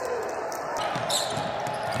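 Basketball game sound on a hardwood court: a ball bouncing and short sharp clicks and squeaks over a steady arena background, with faint voices.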